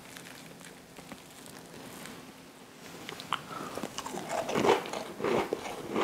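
A French macaron bitten and chewed close to the microphone. It is quiet for the first half, then the shell crunches and chewing grows louder, peaking near the end.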